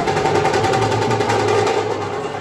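Drums beaten in a fast, even roll, easing off near the end, over a steady background din.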